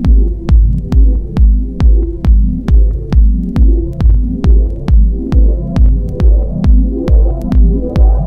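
Minimal techno track: a steady four-on-the-floor kick drum, a little over two beats a second, with thin ticks between the kicks over a repeating low synth pattern.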